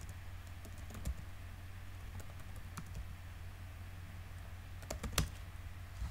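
Typing on a computer keyboard: a few scattered keystrokes, the sharpest about five seconds in, over a low steady hum.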